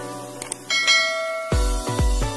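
Subscribe-button animation sound effects: a short mouse click followed by a bright ringing bell chime, the notification-bell ding. About a second and a half in, electronic dance music with a heavy, regular kick drum starts.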